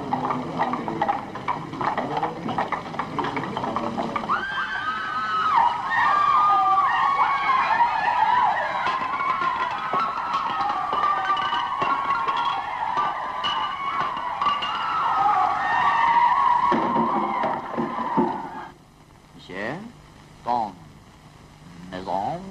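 Many voices overlapping with music, loud and busy, cutting off sharply about three-quarters of the way through. A few quieter spoken words follow.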